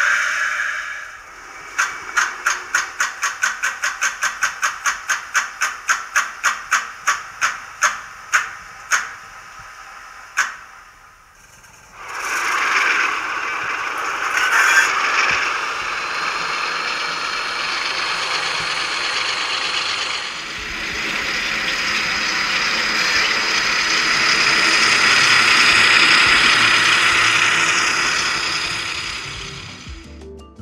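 Recorded diesel engine sound from a model locomotive's sound decoder, played through its small built-in loudspeaker. For about eight seconds the engine beats run evenly and then slow to a stop, as in a shutdown. A second or so later it starts up and runs, the sound swelling about twenty seconds in and easing off near the end.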